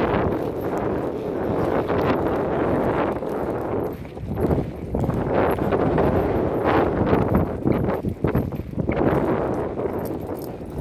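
Hoofbeats of a ridden horse moving along a dirt trail, heard from the saddle, with strong wind buffeting the microphone.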